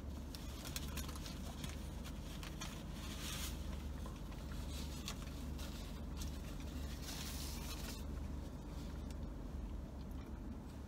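A person eating a burger: faint chewing and the rustle and crinkle of its paper wrapper, strongest about three seconds in and again around seven to eight seconds. Under it runs a steady low hum inside a parked car's cabin.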